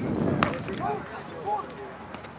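Background voices of coaches and players, scattered and not close, with a single sharp click about half a second in.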